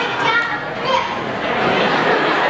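A young boy speaking into a microphone in a large hall, over a steady background murmur.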